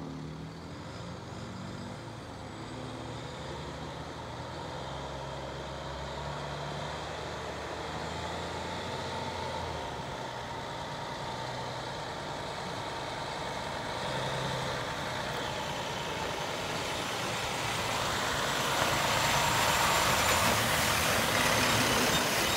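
2009 International 7400 6x6 water truck's diesel engine running as the truck drives on a dirt road, growing louder as it approaches. A steady hiss builds over the last few seconds.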